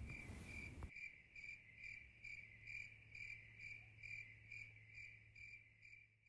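Faint insect chirping, a cricket-like chirp repeated evenly about twice a second, over a low steady hum. A soft hiss cuts off about a second in.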